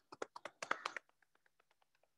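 A quick flurry of light, sharp taps in the first second, then quiet.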